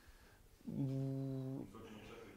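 A man's drawn-out hesitation sound, a level 'euh' held for about a second before he answers.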